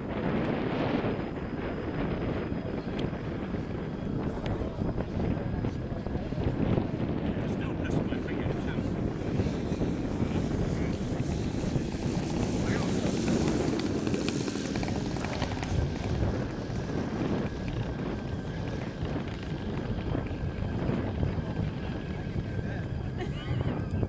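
Engine of a radio-controlled scale Cessna 152 model running steadily at low throttle as the model comes in to land and rolls out on the runway, a little fuller around the middle as it passes low and close.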